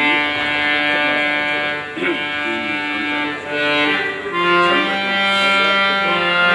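Harmonium playing an Indian classical melody in long held reed notes that step from pitch to pitch, with brief dips in loudness about two and three and a half seconds in.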